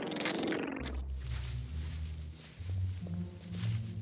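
Low, uneven rumbling in a cartoon soundtrack, starting about a second in under a high hiss, in the manner of an ominous creature growl or bass music cue.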